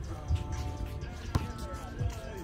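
A basketball bouncing on an outdoor concrete court, two sharp bounces about a second apart, with music and voices in the background.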